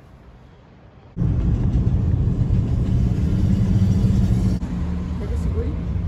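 Quiet room tone, then, about a second in, a sudden loud low rumble of street traffic that eases a little near the end.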